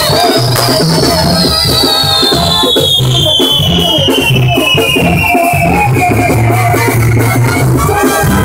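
A fireworks castillo fizzing and crackling, with one long whistle that rises briefly and then slides slowly down in pitch over about seven seconds. Music with a stepping bass line plays throughout.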